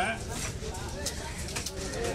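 A heavy cleaver knocking a few times against a fish and a wooden chopping block, with voices murmuring in the background.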